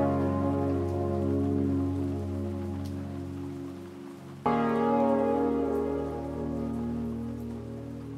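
Lofi chill music: held chords that slowly fade, with a new chord struck about four and a half seconds in and fading in turn, and no drum beat.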